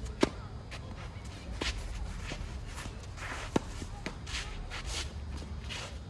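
Tennis serve: a sharp racket-on-ball strike just after the start, then quick footsteps and shoes scuffing and sliding on a green clay (Har-Tru) court. A second loud racket strike comes about three and a half seconds in.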